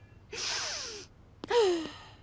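Two breathy cartoon-voice gasps, each falling in pitch, the second shorter and louder.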